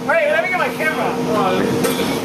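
Men whooping and calling out excitedly for about the first second, then scattered shouts, over a steady low mechanical hum.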